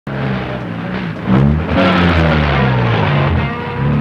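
Loud motor vehicle engine noise with a noisy rush, its pitch sliding up and down and falling away near the end.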